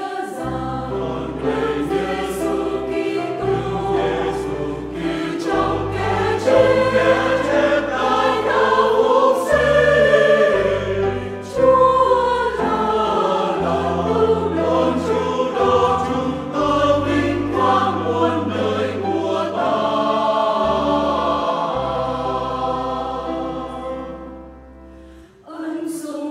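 Church choir singing a Vietnamese Catholic hymn in full chords, accompanied by piano and bass guitar playing sustained low notes.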